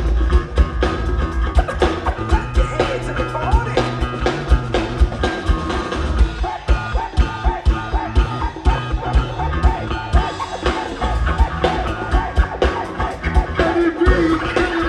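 Live band playing an upbeat instrumental groove: a drum kit keeping a busy, steady beat under electric guitar and congas.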